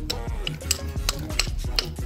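A steel bar struck repeatedly against a rusted, crust-covered wrench pulled from the river with a magnet, knocking off the encrustation. It makes a run of sharp metallic clanks, a little under three a second.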